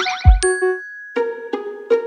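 Short channel logo jingle: a low thump with a falling swoosh, a bright ding about half a second in, then a held chime tone struck lightly about three times.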